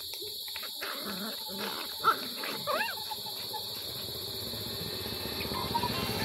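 Puppies play-fighting, with a couple of short high yelps about two to three seconds in, over a steady high-pitched hiss.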